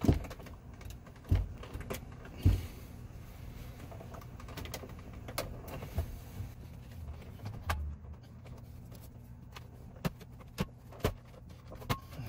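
Plastic dash trim of a Ford Super Duty cab being popped loose and handled: a string of about ten sharp clicks and knocks as the clips let go and the panel is worked free, the loudest three in the first few seconds.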